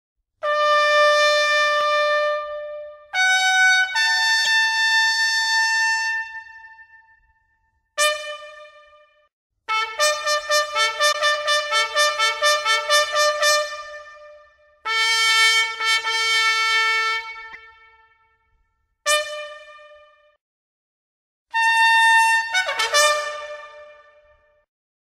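A lone brass trumpet playing a call in separate phrases: long held notes, a run of fast repeated notes in the middle and a falling figure near the end, each phrase trailing off into silence.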